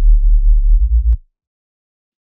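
Dry reese bass from the Serum synth, with its effects bypassed, playing one very low note for just over a second before cutting off abruptly. The patch is two sine-wave oscillators, one slightly detuned, so the note's volume wavers.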